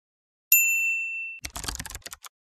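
A single bright chime-like ding sound effect that rings and fades over about a second, followed near the end by a brief scratchy burst of clicks.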